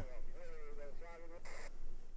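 An indistinct, thin-sounding voice in the background, wavering in pitch for about a second and a half, then a short burst of hiss.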